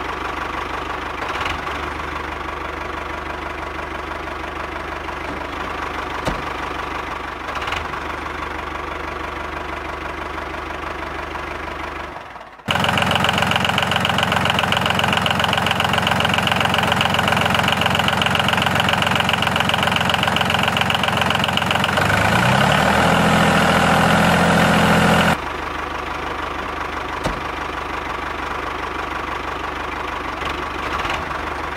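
Engine-like motor drone, running steadily. Partway through, a louder, denser stretch cuts in abruptly, climbs in pitch in steps near its end, then cuts off back to the steadier drone.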